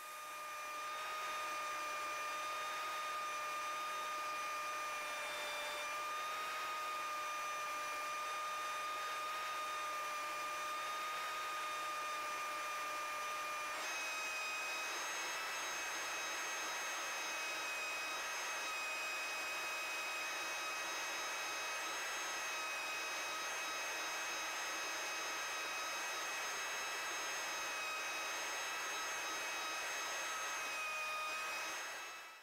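Engine and propeller drone of a single-engine light aircraft heard inside the cabin, steady, with a change in its tones about halfway through.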